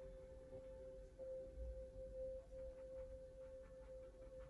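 Faint background music sustaining one steady, ringing tone.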